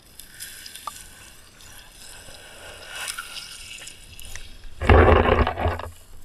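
River water gurgling and sloshing around a GoPro in its waterproof case held at the surface, then, about five seconds in, a loud burst of splashing for about a second as a swimmer breaks the surface right beside the camera.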